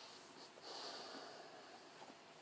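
A man's faint breath blown out through pursed lips: one soft exhale of under a second, starting a little over half a second in.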